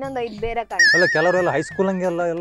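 A woman talking animatedly, with a high, wavering tone over her voice for about a second near the middle.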